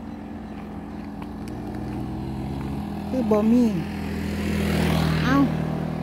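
A motor vehicle passing on a wet asphalt road: engine hum and tyre hiss grow louder to a peak about five seconds in, then the engine note drops in pitch as it goes by.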